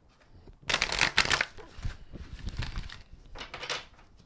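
An oracle card deck, the Crystal Mandala deck, being shuffled by hand in several quick bursts of card-on-card rustling, the longest and loudest about a second in.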